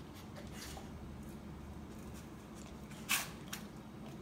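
A dog faintly licking and mouthing at a piece of raw turkey heart, with a few small wet clicks. About three seconds in comes one short, sharp puff of breath, the loudest sound.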